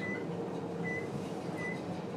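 Lift car hum with a short high-pitched beep repeating about every 0.8 seconds.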